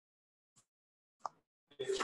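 Silence in a pause of a talk, broken by a faint tick and a brief short sound, then a man's voice starting near the end.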